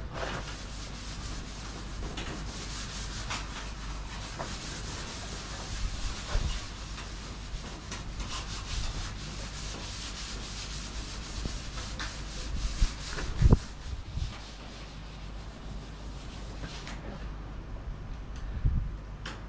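A scouring pad scrubbed by hand over stainless steel sheet: a continuous rasping scrub made of many quick strokes, cleaning off residue left after bicarb and white vinegar. A single thump about two-thirds of the way through.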